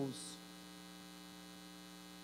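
Faint, steady electrical mains hum made of two low, unchanging tones, with a spoken word trailing off right at the start and a brief hiss just after.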